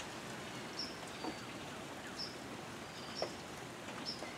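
Faint steady patter of a wintry mix of rain and snow falling, with a few short, high bird chirps scattered through it.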